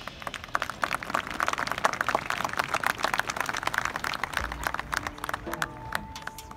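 Crowd in the stands applauding, a dense patter of many hands clapping that thins out near the end.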